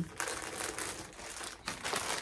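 Clear plastic garment bag crinkling and rustling as it is handled, with a brief lull about three quarters of the way through.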